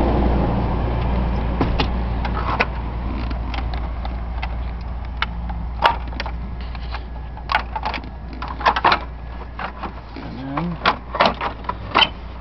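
Plastic dashboard trim of a 1998 Dodge Caravan being handled and pushed into place, giving scattered clicks and knocks that come thicker in the second half, over a steady low hum.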